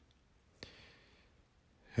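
A man's soft breath, drawn in for a little under a second during a pause in speech.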